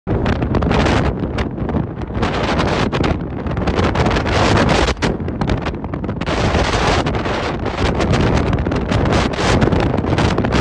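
Wind buffeting a phone's microphone from a moving car on a highway, a loud gusty rush over the car's road noise.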